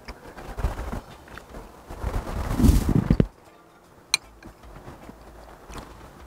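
Chewing a mouthful of food close to a clip-on microphone, with uneven rustling noise, loudest about two to three seconds in, and a single sharp click about four seconds in.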